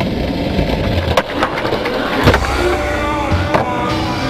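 Skateboard wheels rolling on concrete, with a few sharp clacks of the board about a second in and again past the two-second mark.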